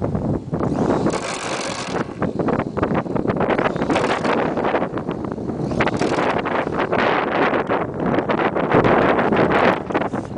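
Wind buffeting the microphone in uneven gusts, a loud rumbling rush.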